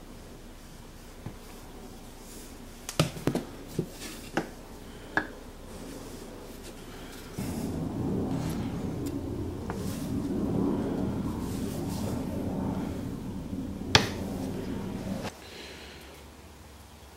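A few sharp clicks and taps, then a flat scrap of wood spreading wood glue across a small wooden board: a steady rubbing, scraping sound lasting about eight seconds, broken by one sharp click near the end.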